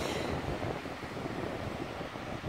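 Wind buffeting the microphone over the steady wash of ocean surf breaking on a beach and rock shelf.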